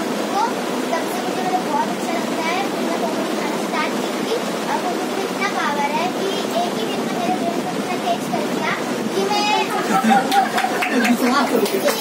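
A girl's voice, over a steady background hiss.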